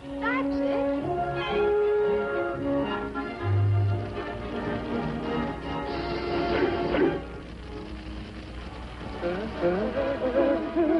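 Orchestral cartoon score playing a run of held notes, with a few quick rising glides in the first second. A short hiss joins the music about six seconds in.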